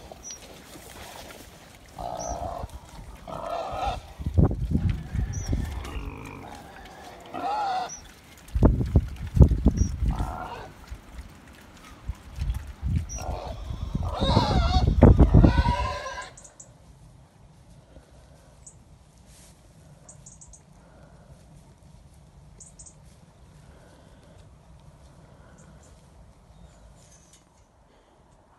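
Pigs grunting as they feed in a muddy pen, with gusts of wind buffeting the microphone three times. About 16 seconds in, it cuts to faint wind alone.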